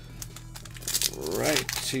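Foil booster-pack wrapper and trading cards crinkling and rustling as they are handled, growing louder and denser about halfway through, over a low steady hum. A short wordless vocal sound from the man handling them comes near the end.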